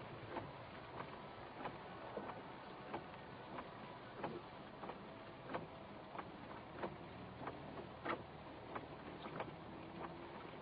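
Regular ticking inside a car's cabin, about three ticks every two seconds, over a faint steady background noise.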